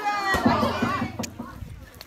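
Teenagers' voices and chatter, loudest in the first second and fading after, with a couple of short knocks.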